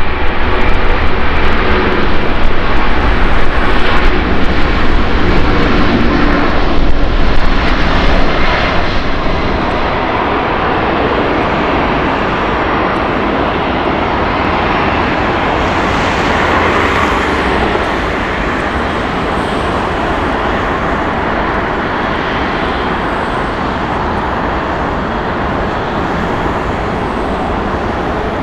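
Boeing 747-400's four jet engines at takeoff power as it accelerates down the runway, loud for the first several seconds. The jet noise then settles to a steadier, quieter level.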